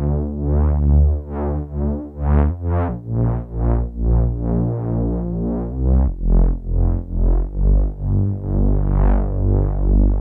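Moog Matriarch analog synthesizer playing held chords over a low bass line through an Alexander Luminous phaser pedal, the sound swelling and sweeping a few times a second as the pedal's ramp varies the phaser's speed and depth. The chord changes about every three seconds.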